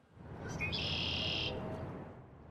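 Outdoor park ambience with a bird calling: one high, steady call lasting under a second, starting about half a second in, over a low background rumble.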